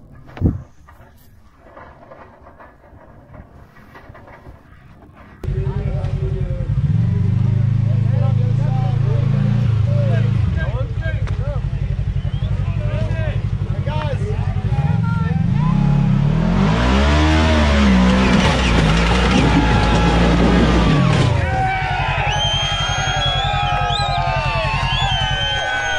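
A side-by-side UTV's engine revs hard and unevenly as the buggy climbs a steep rock ledge, starting suddenly about five seconds in after a quiet stretch. Its pitch rises and falls repeatedly, loudest about two-thirds of the way through, while spectators' voices and shrill whistles come in over it near the end.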